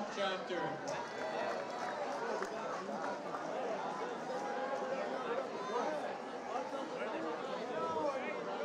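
Crowd chatter: many voices talking at once in a large hall.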